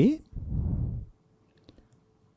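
A man's intoned sermon voice closing a drawn-out word, then a soft breath close to the microphone, and two faint clicks near the end.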